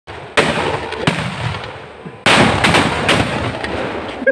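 Firecrackers exploding: three loud bangs, the third and loudest about halfway through, each trailing off in crackling and a rumble that dies away.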